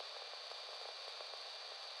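Faint steady hiss, like static, with a thin high steady tone above it.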